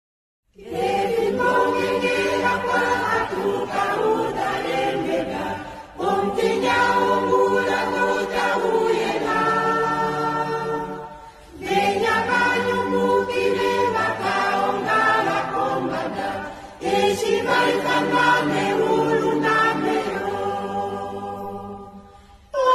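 A choir singing an Oshiwambo gospel song, starting about half a second in after silence, in four phrases of about five seconds each.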